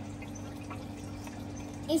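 Water trickling and dripping in a hydroponic PVC pipe system, as nutrient water runs off the roots of a lifted net pot, over a steady low hum.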